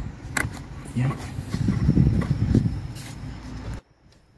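Handling noise from hands working the ribbed rubber air intake hose off its clamp: rumbling and knocking with a few sharp clicks, cutting off suddenly near the end.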